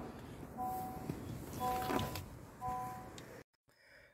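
A 2024 Honda Accord Hybrid's cabin warning chime sounding three times, about a second apart, over faint background noise, cut off suddenly near the end.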